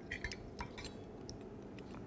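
A few faint, quick clinks and taps of small kitchen utensils being handled, bunched in the first second, then a low room hush.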